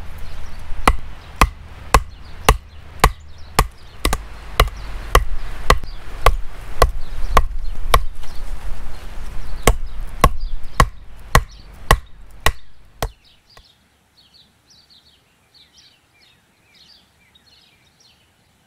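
Hatchet chopping into a log, a steady run of strikes about two a second that stops about 13 seconds in. Small birds chirp afterwards.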